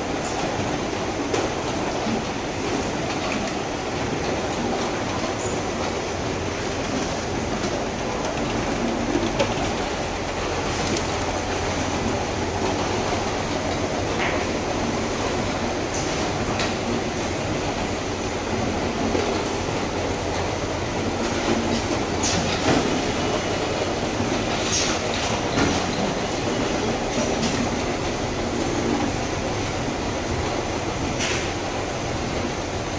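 Automatic bottle-filling line running: the chain conveyor carrying plastic detergent jugs and the filling machinery make a steady mechanical noise, with scattered sharp clicks.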